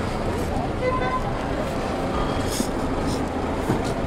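Busy street-market ambience: a steady rumble of road traffic with faint, indistinct voices of people around.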